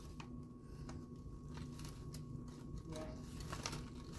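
Faint, scattered light clicks and rustles of hands handling a clutch of ball python eggs on newspaper and coconut-husk bedding, over a low steady hum.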